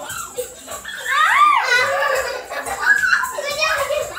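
Children's voices calling out during a game, with one high rising-and-falling call about a second and a half in.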